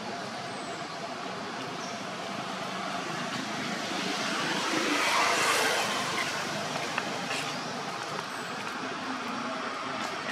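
Steady background noise with no clear pitch, which swells to a peak about halfway through and then fades again.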